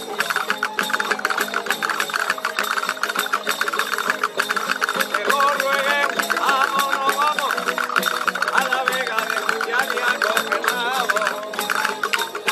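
Spanish folk string band playing an instrumental passage of a parranda (seguidilla) in triple time: several guitars strummed with dense, regular strokes under a plucked melody line, with a tambourine's jingles shaken along.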